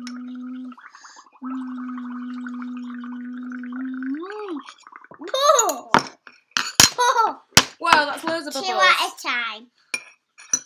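Bubbling from someone blowing through a straw into soapy paint, under a steady hummed 'mm' that breaks off briefly about a second in and ends in a rising glide near four seconds. After that a child's voice chatters excitedly, with a few sharp clinks.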